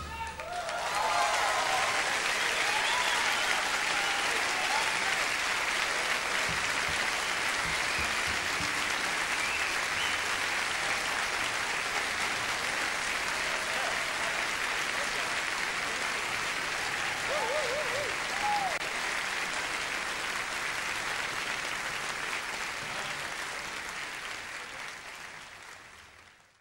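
Concert audience applauding, with a few cheering voices; the clapping holds steady, then fades out over the last few seconds.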